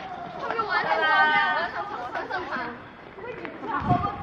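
Several people talking over one another in raised voices, loudest about a second in where one high-pitched voice dominates. A brief low bump near the end.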